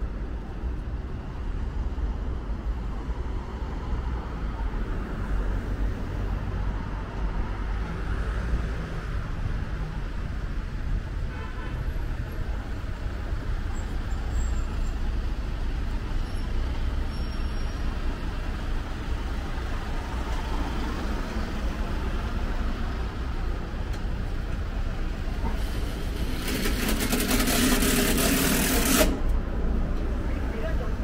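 City street traffic: a steady low rumble of vehicles. Near the end comes a loud hiss lasting about three seconds.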